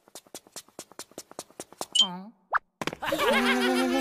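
Cartoon sound effects: a run of quick, even ticks, about seven a second, then a falling whistle and a short rising pop. Squeaky cartoon character voices then chatter without words.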